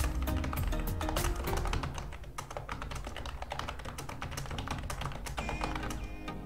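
Computer keyboard typing, a quick, irregular run of key clicks, over background music.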